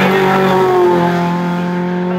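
Renault Clio Cup race car's four-cylinder engine running hard as the car passes close by, its note dropping in pitch at the start and again just under a second in, then holding steady as it goes away.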